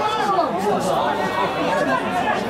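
Several people's voices talking over one another in a steady jumble of chatter, close enough to be loud but with no words clear enough to pick out.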